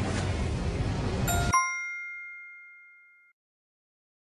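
A rushing countdown sound effect cuts off about a second and a half in, as a bright bell-like ding sounds and rings away over about two seconds: the quiz chime that reveals the correct answer.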